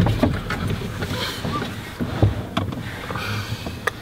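Car cabin noise: a steady low rumble with rustling and scattered light clicks as the people in the seats move.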